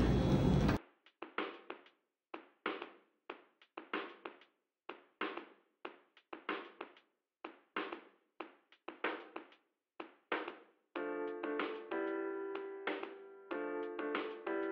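Background music: a sparse beat of sharp percussive hits with silence between them, joined by held synth chords about eleven seconds in.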